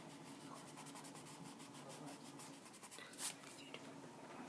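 Faint, rapid strokes of a drawing tool rubbing over sketchbook paper while shading, with one louder scrape about three seconds in.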